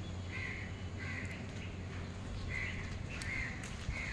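A crow cawing four times, in two pairs, over a steady low background hum.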